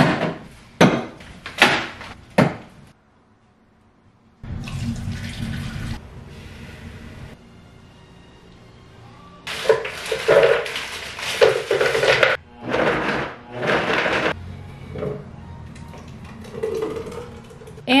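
Kitchen sounds of a smoothie being made at a Vitamix blender: a steady rush of poured or running water about four seconds in, then louder uneven clattering and rustling as frozen fruit goes into the open blender jar.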